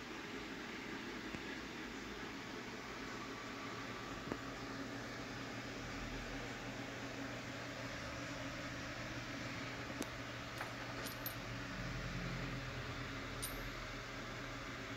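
Steady background noise with a low hum, and a few faint light clicks in the second half.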